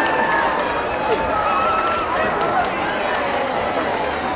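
Large street crowd talking and calling out all at once, a steady babble of many overlapping voices with no single clear speaker.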